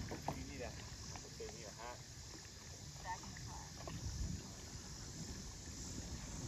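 Faint, scattered voices calling across open water, over a steady low rumble.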